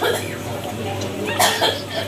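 A person coughing, a short double burst about one and a half seconds in, over background voices.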